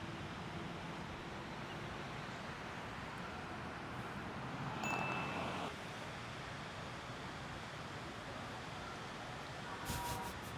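Steady outdoor background noise, with a short click and a brief high ringing tone about five seconds in.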